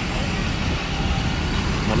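Roadside traffic noise: a steady, low rumble of vehicles on the street.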